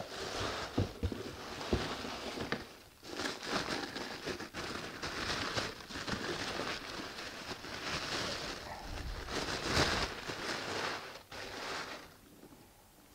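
Tissue paper rustling and crinkling as a boot is unwrapped from its paper wrapping by hand, with brief pauses, stopping about a second before the end.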